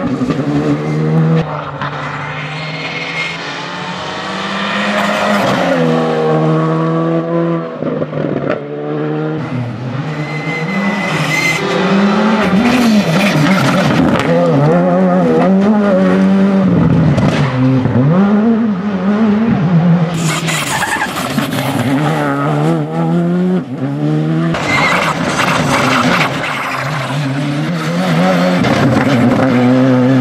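Škoda Fabia Rally2 rally car's turbocharged four-cylinder engine revving hard, its pitch climbing and dropping over and over through gear changes, with the tyres sliding and scrabbling on loose gravel.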